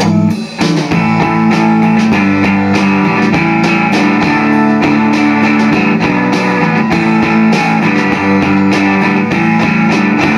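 Live rock band playing an instrumental passage: a strummed electric guitar over drums keeping a steady beat, with no vocals. The music drops briefly about half a second in, then carries on.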